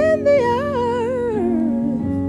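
A woman's wordless hummed vocal, wavering with vibrato and sliding down in pitch, over sustained keyboard chords.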